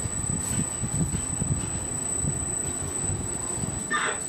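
Roller coaster train on its test run, rolling with a steady low rumble, with a sharp click near the end.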